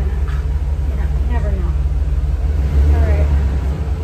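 Ford E350 shuttle bus under way, heard from the driver's seat: a steady low rumble of engine and road noise, swelling around three seconds in.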